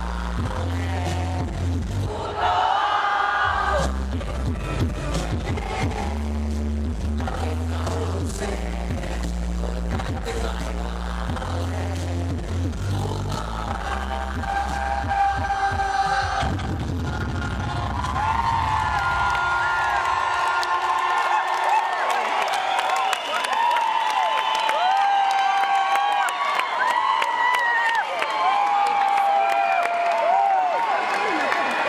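Live hip-hop track's heavy bass beat pounding through a concert PA, echoing in an ice-hall arena, until it stops a little over halfway through. A crowd then cheers and screams in many high voices.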